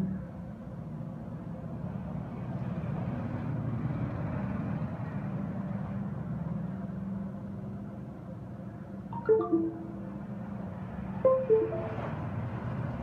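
A steady low hum, with two short electronic chimes near the end, about two seconds apart, each a few quick notes stepping down in pitch.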